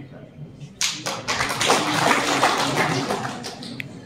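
Audience applauding: the clapping comes in suddenly about a second in and dies away near the end.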